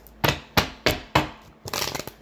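A tarot deck being handled on a table: four sharp knocks about a third of a second apart, then a brief rustle of cards near the end.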